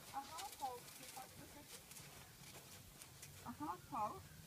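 Faint speech in short snatches, with soft, irregular hoofbeats of a Friesian horse being ridden.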